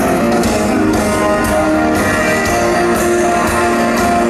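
Live rock band playing an instrumental passage, led by electric guitars over bass, drums and keyboards.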